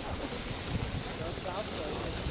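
Indistinct voices, faint and in the distance, over a steady low rumble of wind on the microphone.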